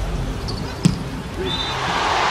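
A volleyball struck hard once, about a second in, in a rally over the steady noise of an arena crowd.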